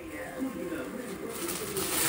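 Fizzing hiss of a Diwali firework spraying sparks, starting about one and a half seconds in and growing louder, over low voice-like sounds.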